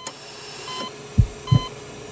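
Produced heartbeat-monitor sound effect: short, high electronic beeps about every 0.8 s over a steady hum, with a pair of deep heartbeat-like thumps about a second in.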